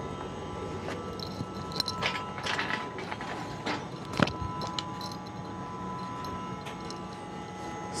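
Steady hum of the International Space Station's cabin fans and equipment, carrying a few thin constant tones, with scattered light clicks and knocks from someone pulling along handrails and through hatches while floating; the sharpest knock comes about halfway through.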